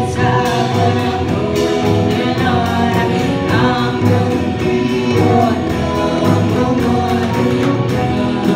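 Live band playing with several singers: group vocals over keyboards, bass, guitars, drums and horns, with a steady beat on the cymbals.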